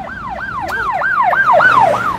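Emergency vehicle siren in a fast yelp, its pitch sweeping up and down about four times a second and growing louder.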